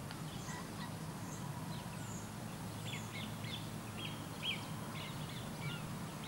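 Small birds chirping: many short, scattered calls over a steady low background hum.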